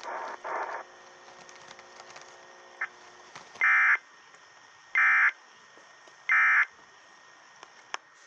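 Emergency Alert System end-of-message code: three short, identical bursts of high digital data tones, about 1.3 seconds apart, marking the end of an Amber Alert broadcast.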